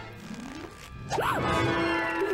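Cartoon sound effect: about a second in, a quick zip-like swoosh whose pitch rises and falls, over background music that then settles on a held tone.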